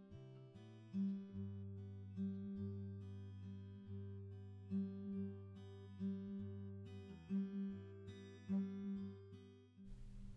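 Quiet background music: a plucked acoustic guitar picking out single notes over held low notes.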